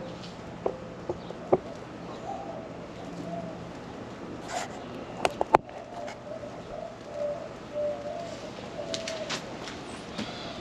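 A pile of dry pine needles burning in a metal fire pit, crackling with scattered sharp pops; the loudest is a quick cluster of pops about halfway through. A bird calls in the background with a low, wavering call, briefly early and again through the second half.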